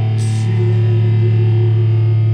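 Live rock band playing loudly: distorted, effects-laden electric guitar over a held low bass note, with a short burst of hiss about a quarter second in.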